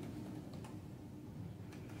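A few faint clicks on a laptop, two of them close together near the end, over a faint steady room hum.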